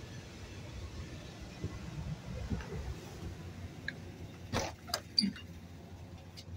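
A steady low rumble with no speech, broken about four and a half to five seconds in by a few sharp clicks and knocks from the phone being handled as its camera is switched by mistake.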